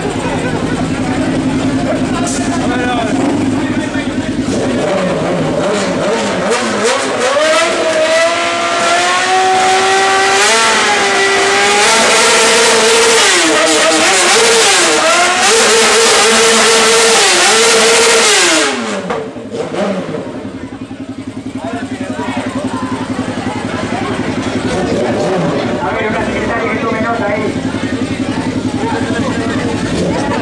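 Motorcycle engine revved up from idle. The revs climb over several seconds and are held high and loud for about six seconds, wavering a little, then drop sharply back to a steady idle.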